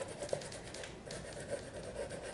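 Blue wax crayon scratching faintly across paper, colouring in with sideways strokes, with a few small ticks.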